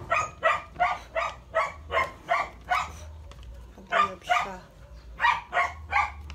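A dog barking repeatedly: a quick run of about nine barks, then two pairs of barks.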